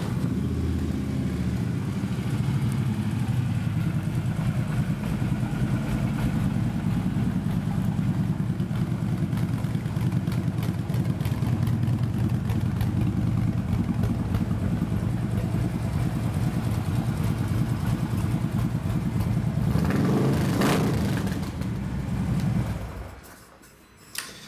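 A 2014 Harley-Davidson Ultra Limited's 103-cubic-inch V-twin, fitted with Vance & Hines exhaust, catches right at the start and idles steadily. It swells briefly about twenty seconds in, then shuts off near the end.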